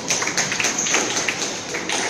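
Squash rally: a quick run of sharp knocks as the ball is struck by rackets and hits the walls, with high squeaks of court shoes and footfalls on the wooden floor.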